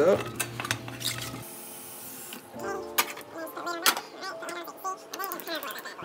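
Cauliflower florets tipped into a stainless-steel pot with a steamer basket, giving scattered knocks and metal clinks, the sharpest about three and four seconds in. Soft background music fades out early on.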